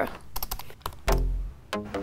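Quick typing on a laptop keyboard: a rapid run of key clicks for about a second. About a second in, music starts with a low sustained note.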